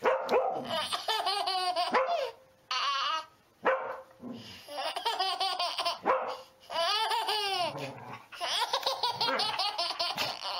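A baby laughing in repeated fits, with a dog barking in between.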